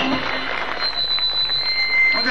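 A live band's last held chord cuts off just after the start, leaving the noise of a large open-air concert audience. A thin steady high whine runs through it from about a second in.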